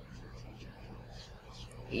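Faint, soft swishing of a paint brush worked around in vegetable oil in a plastic lid, over a low steady hum.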